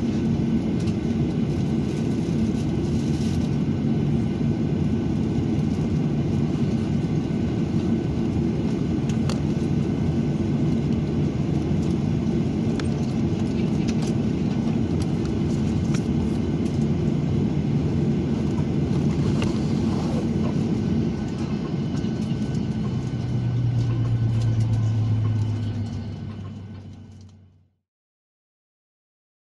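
Steady rumble and hum inside the cabin of a Virgin Australia Boeing 737 parked at the gate, with several steady low tones running through it. A deeper hum swells about 23 seconds in, then the sound fades out near the end.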